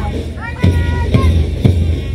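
March music with a steady drum beat, about two beats a second, played over outdoor loudspeakers for a parade march-past.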